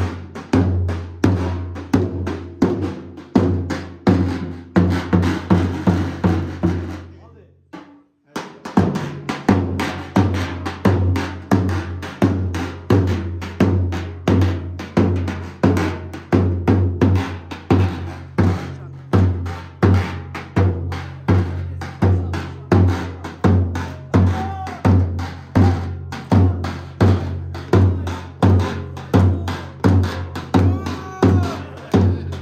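Davul, the large double-headed Turkish bass drum, beaten in a steady dance rhythm of deep booms with lighter stick strokes between. The drumming fades and stops for a moment about eight seconds in, then starts again and keeps time.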